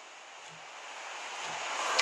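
A faint, steady hiss of background noise that grows gradually louder.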